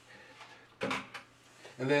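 Kitchen things handled on a countertop: a short clatter with a couple of sharp knocks about a second in, like a spoon, sauce bottle or shaker being set down or picked up.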